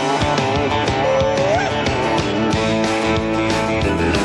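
Live country-rock band playing an instrumental stretch between sung lines: electric bass, drums and guitars, with a lead note that slides upward about a second and a half in.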